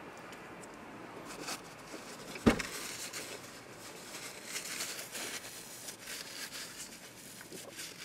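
Quiet eating noises inside a parked car: a man chewing a mouthful of food, with light rustling of a paper food wrapper from about three to six seconds in, and one sharp knock about two and a half seconds in.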